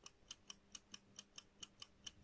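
Near silence with faint, rapid, evenly spaced ticking, about four or five ticks a second, over a faint steady hum.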